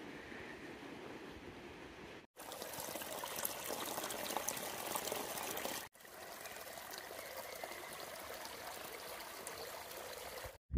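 Small mountain creek trickling and flowing over rocks and through vegetation. The sound cuts off briefly twice, about two seconds and six seconds in. The middle stretch is louder and brighter, like water heard up close.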